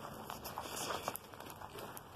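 Faint rustling and crinkling from a phone being handled while walking, with a few light scuffs.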